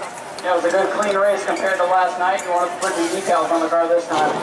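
Speech: a voice talking, in short phrases with brief pauses.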